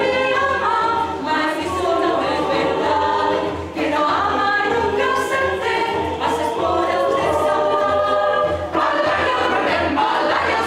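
Mixed choir singing in several parts, the voices holding and moving between sustained notes, over a steady low beat.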